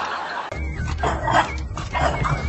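Bulldog puppy barking in a few short yaps, over background music.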